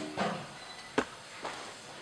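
A single sharp click of hard plastic about a second in, as Snap Circuits parts and the plastic base grid are handled.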